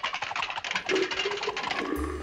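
Rapid clattering clicks, like pool balls rattling into a pocket, with a steady tone coming in about halfway through.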